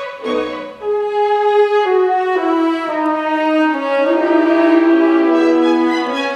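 A string orchestra of violins and cellos, played with the bow, plays a slow melody in long held notes that step down and then rise again.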